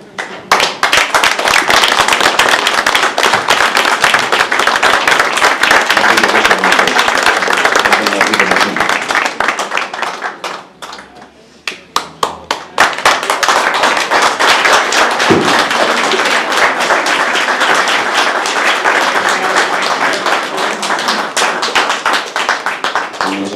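Audience applauding steadily, thinning to a few scattered claps about halfway through, then swelling again to full applause.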